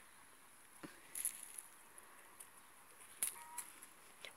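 Faint scraping and rustling of a bare hand raking through loose, crumbly garden soil, with a few soft clicks: a short burst about a second in and a couple more just after three seconds.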